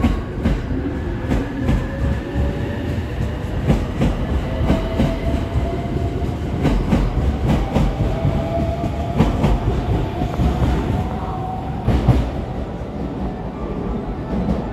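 A JR West 289 series electric limited express pulling out and passing close by, its wheels clacking over rail joints. A faint electric motor whine rises slowly in pitch as it gathers speed.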